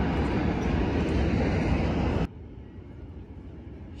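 A loud, steady rumble of a subway train crossing the Manhattan Bridge cuts off abruptly a little over two seconds in. Quieter outdoor ambience follows.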